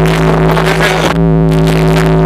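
Concert sound system holding one loud, steady low bass note, with crowd noise over it.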